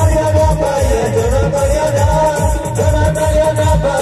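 Amplified live band music played loud: a heavy, fast, steady drum beat under a sustained, wavering lead melody.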